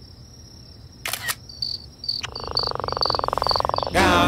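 Cricket-like chirping: short high chirps repeating at an even pace, joined a little past two seconds in by a steady buzzing trill. A brief swish comes about a second in.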